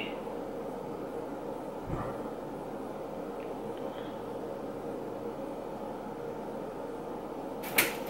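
Steady background hiss with a faint hum, a soft thump about two seconds in, and a short sharp click near the end.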